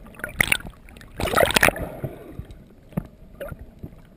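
Underwater water noise picked up by a freediver's camera moving through open water: a muffled wash with two louder rushes in the first two seconds and scattered clicks and knocks.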